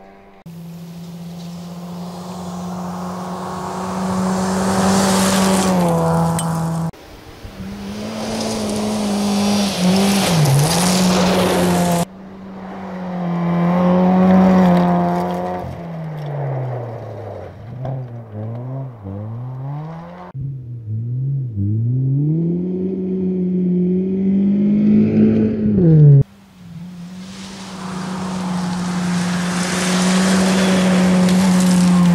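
Rally cars driven flat out on gravel roads, their engines at high revs. The engine note drops and climbs again and again as the cars shift gear, lift off and accelerate through corners. The sound changes abruptly several times as one clip of a car cuts to the next.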